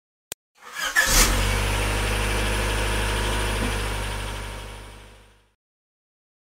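Car engine starting: a short click, a quick rise as it catches, then a steady run that fades out by near the end.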